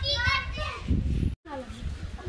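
Children's voices talking and calling out, broken by a sudden brief silence about halfway through.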